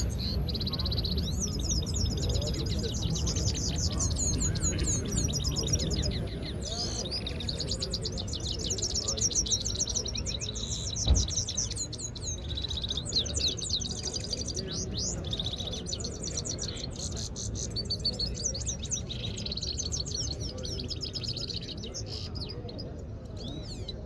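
Caged Himalayan goldfinches singing almost without pause in fast, twittering trills, two birds in adjoining cages singing against each other in a goldfinch fighting contest. A low crowd murmur runs underneath, and a single sharp knock comes about eleven seconds in.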